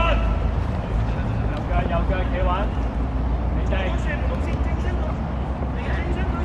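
Young footballers' shouts, brief and scattered, over a steady low rumble.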